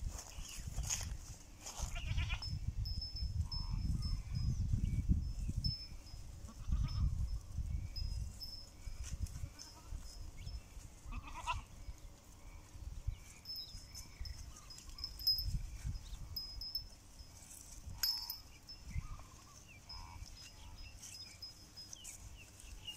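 A herd of goats in a pasture, with a few faint, short bleats now and then over a low rumble that is loudest in the first several seconds. A thin high tone comes and goes in the background.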